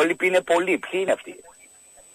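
A man speaking for about a second and a half, his voice narrow and phone-like, then only a faint steady hiss.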